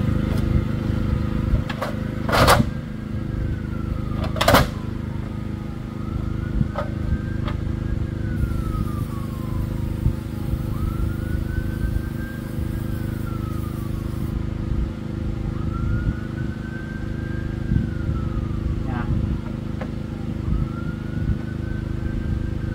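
A steady engine hum of an idling vehicle, with two short hissing sprays of cleaner early on and a faint tone that rises, holds and falls again about every five seconds.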